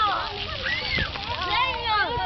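Several children's high voices chattering and calling over one another, with water splashing throughout.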